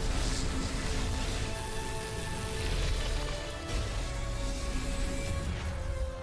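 Film score with held tones playing over a deep rumble and rushing noise, the sound effect of a black hole collapsing, which cuts off near the end.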